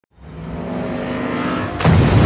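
Car chase film soundtrack: several car engines running hard at speed across ice, then a sudden loud hit near the end.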